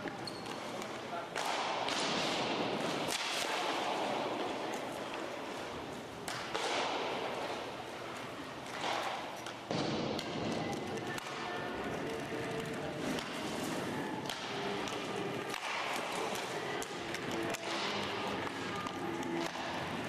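Roller hockey practice in an echoing rink: repeated thuds of the puck off the goalie's pads, stick and boards. Between them come swishing scrapes of inline skates and the goalie's Rollerfly pad sliders across the sport-court floor, with indistinct voices in the background.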